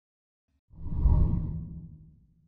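Intro logo sting: a deep whoosh sound effect with a low rumble, starting just under a second in, swelling quickly and fading away.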